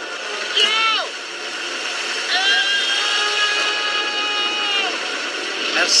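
Storm sound effect of steady wind noise. Over it, a voice shouts "Go!" about half a second in, then gives a long, high, held yell from about two to five seconds in: a cartoon character crying out as he is blown into the air.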